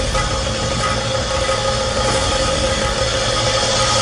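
An engine running steadily with a constant hum, over a wash of street noise.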